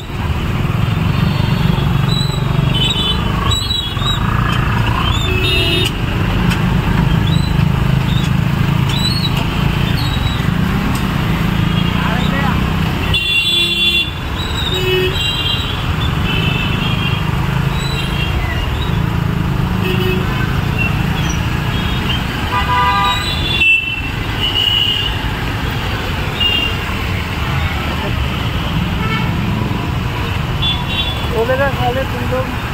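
Busy street traffic: car and motorbike engines run steadily past, with several short horn honks, including a longer honk about halfway through.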